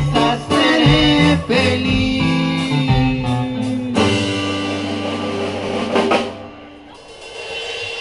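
Live band music with keyboard: a rhythmic passage, then the song ends on a long held chord that fades away about six seconds in.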